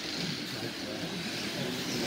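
Trans Am class slot cars lapping a multi-lane routed track: a steady whir of small electric motors and cars running in the slots, with faint voices in the background.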